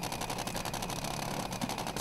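Top Fuel dragster's supercharged nitromethane V8 idling, with a rapid, even rattle of pops.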